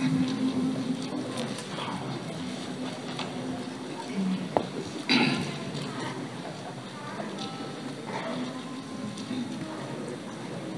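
Quiet passage of live concert music from a wind band and choir: a held low chord fades in the first second, followed by softer sustained notes. A sharp click sounds about halfway through.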